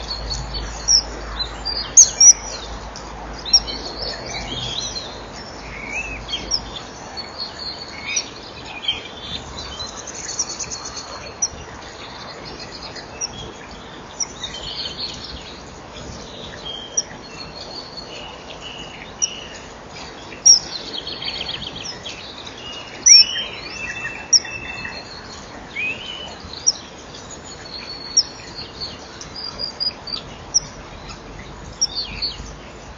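Small birds chirping and singing, many short overlapping calls and trills with a few sharp, loud chirps standing out, heard over a steady hiss.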